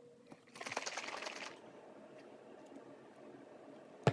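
Plastic cap of a pre-workout drink bottle being twisted and worked by hand: a crackling, ticking rattle lasting about a second, starting half a second in, then faint room tone, and a sharp click at the very end.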